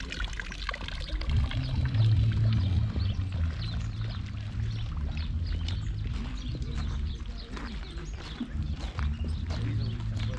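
Water pouring from a fountain spout into a stone trough, with a low rumble coming and going from about a second in.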